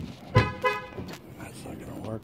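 A heavy thump, then two quick short toots from a car horn, the double chirp a car gives when locked or unlocked with its remote.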